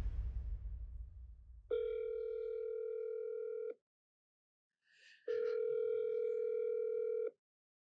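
Telephone ringback tone of an outgoing call ringing at the other end: two steady rings about two seconds long, a pause of about a second and a half between them. Before the first ring a deep rumble fades away.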